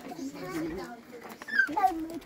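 A toddler's high-pitched babbling and squeals, with a louder pair of squealing calls near the end.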